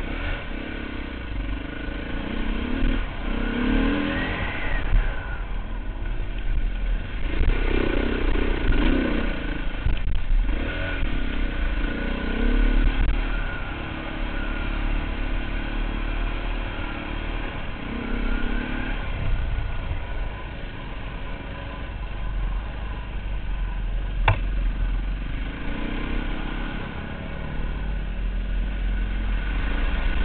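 Dirt bike engine heard from on board, revving up and down as the bike rides a muddy trail, over a heavy low rumble. A single sharp knock comes about 24 seconds in.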